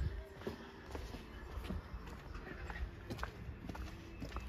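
Footsteps on a concrete driveway: faint, irregular steps over a low rumble.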